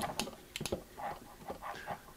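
A few light, irregular clicks and knocks from a prototype robot leg being pressed and flexed by hand against its foot switch and load cell.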